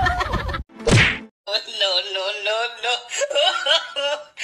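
A single loud whack about a second in, after a brief drop-out, followed by a high, wavering voice that runs on to the end.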